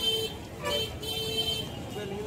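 Vehicle horn honking in several blasts, short ones and a longer one, over the chatter of a crowd on the street.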